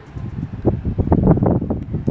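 Wind buffeting the microphone in gusts, a rumbling rush that swells loudest in the middle.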